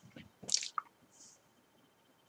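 Wet mouth noises close to the microphone: a few short lip smacks and tongue clicks, the loudest about half a second in.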